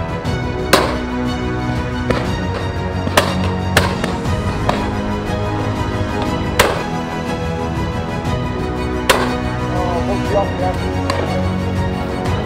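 Background music plays throughout, with several sharp shotgun shots over it at irregular intervals, about five loud ones and a couple of fainter ones.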